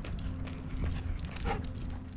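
A person and a dog walking on asphalt: light, irregular footstep clicks over a low steady rumble. A short, faint voice-like sound comes about one and a half seconds in.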